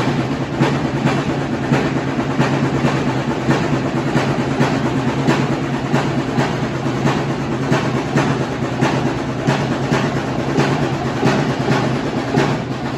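Percussion-driven music with a steady beat about twice a second over a low sustained drone.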